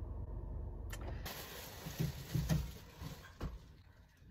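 Steady low rumble inside a car's cabin. About a second in it gives way to a hiss with a few soft bumps and knocks, which fade almost to nothing near the end.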